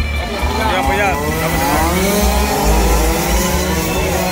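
Small 48cc racing minibike engines buzzing at high revs as the bikes approach down the straight, several at once, their pitch gliding up and down as they rev and shift. Voices and a low wind rumble on the microphone are mixed in.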